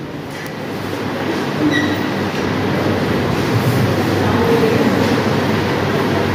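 A steady low rumbling noise.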